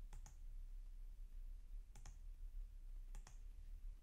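A few faint computer mouse clicks: two close together at the start, one about two seconds in, and another near the end, over a steady low hum.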